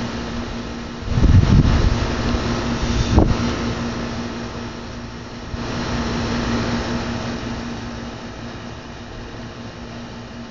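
A dog tearing and chewing grass close to the microphone, loudest a little over a second in, over a steady mechanical hum.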